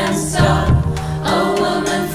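Women's choir singing in layered vocal harmony over a steady low held note.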